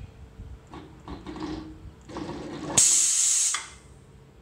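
Pneumatic air ram firing through its solenoid valve: a loud hiss of compressed air about three seconds in, lasting under a second and then fading, as the cylinder's rod shoots out. Before it, quieter uneven noise from the gantry motors as the machine is jogged.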